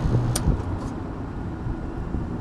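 Steady low mechanical hum from a packaged gas furnace unit's blower fan, with a single sharp click about a third of a second in as the fan is being switched off.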